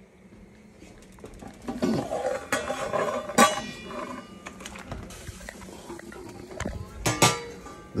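Stainless steel stockpot and lid clinking and knocking, with a few sharp clanks, the loudest about three seconds in and again near the end. A steady hiss from water at the boil in the pot runs underneath.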